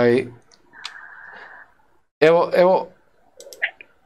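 A man's voice in short spoken bursts, with faint clicks and a brief soft hiss in the gaps between words.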